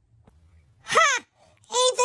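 A high-pitched, theatrical character voice giving a short wordless wail that rises and falls in pitch about a second in, mock sobbing, with another wail starting near the end.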